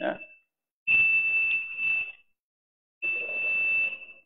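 A steady, high-pitched electronic tone, like a beep, heard in two stretches of a little over a second each, about a second in and again about three seconds in, with a short word at the very start.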